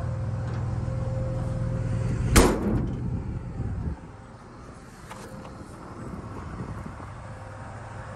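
A steady low hum, then one sharp bang with a short ring about two and a half seconds in as someone climbs out of a truck's splicing box body. About four seconds in the hum drops away, leaving a quieter background.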